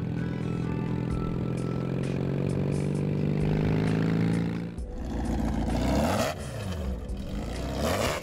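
BMW boxer-twin cafe racer motorcycle running steadily as it is ridden along, its engine note sagging slightly toward the end. The sound cuts off suddenly, and engine notes rising and falling follow.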